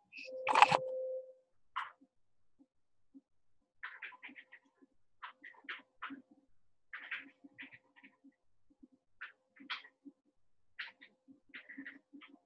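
Keys being typed on a TI-99/4A computer keyboard: short clicks and taps in quick bursts with pauses between, starting about four seconds in. A brief handling noise in the first second is the loudest thing.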